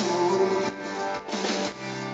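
Live rock band playing, with guitar to the fore, recorded from the audience.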